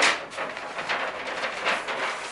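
A large flip-chart paper sheet being lifted and turned over the top of the pad, rustling and crinkling in uneven surges.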